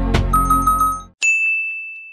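Background guitar music that stops about a second in, with a quick run of four identical high chime notes over it. Then a single bright sound-effect ding rings on and fades away.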